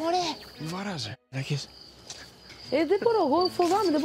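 Crickets chirping steadily with a high, even pitch, under people's voices talking in a garden at night.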